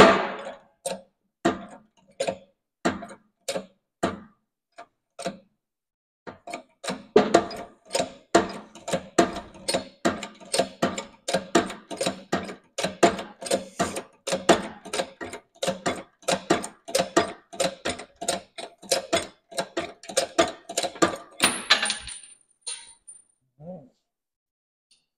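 Homemade hydraulic shop press being pumped in rhythmic strokes as its ram pushes a bushing out of a hydraulic cylinder's rod eye. A few spaced strokes come first, then a steady run of about three to four strokes a second, ending with a short, louder burst about two seconds before the end.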